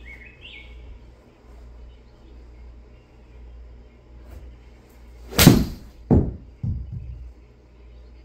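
A golf iron striking a ball off a hitting mat in a simulator bay: one sharp, loud strike about five seconds in, followed less than a second later by a second, smaller knock and a faint third.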